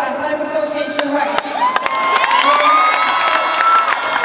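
A group cheering and clapping, with sharp hand claps and several long held whoops that start about a second and a half in and stop just before the end.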